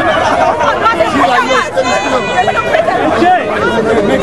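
Many people talking over one another at once: loud, dense crowd chatter with overlapping voices.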